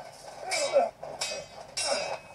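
Swords clashing in a duel: three sharp metallic rings in about two seconds, mixed with voices.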